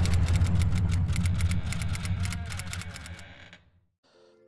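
Logo intro sound effect: a deep, low swell with rapid clicking ticks over it, fading out about three and a half seconds in.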